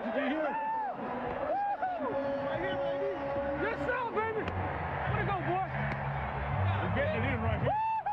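Football players whooping and yelling in excitement, heard over their on-field microphones. It is a string of short rising-and-falling 'woo' calls, and a low rumble joins in about halfway through.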